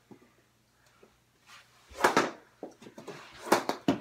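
Knee hockey play: a sharp knock of mini hockey sticks and a small ball about halfway in, a few light clicks, then a louder knock near the end as a shot strikes the mini goal's post.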